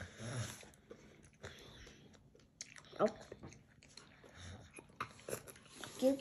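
Faint eating sounds: a child chewing a mouthful of strawberries and whipped cream, with small wet mouth clicks. A short voiced sound about three seconds in.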